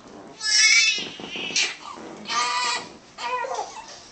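A newborn baby crying in about four short, high-pitched wails while being swaddled.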